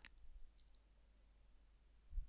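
Near silence: faint low room hum, with one faint computer-mouse click about two-thirds of a second in.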